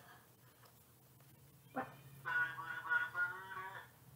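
A click, then a man's voice calling out for about a second and a half, drawn out in a nearly level pitch, heard through a Ring security camera's speaker.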